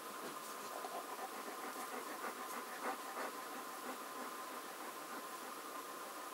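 Faint breathing of a man drawing on a cigarette and exhaling the smoke, a few soft breaths in the first half, over a steady faint hum.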